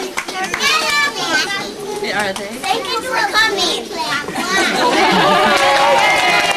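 Many young children's high voices chattering and calling out over one another, with longer held voices in the last second or so.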